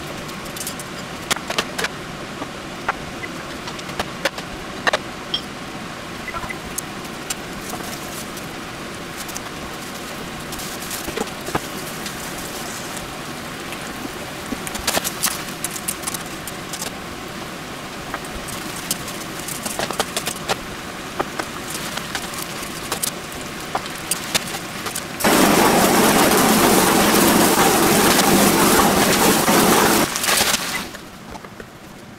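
Sliced beef and onions sizzling in a frying pan, with the metal tongs clicking and scraping against the pan as the meat is turned. About 25 seconds in, a much louder, steady hiss starts suddenly.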